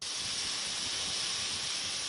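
Belt-driven chopstick-making machines running, a steady high hiss with no clear rhythm.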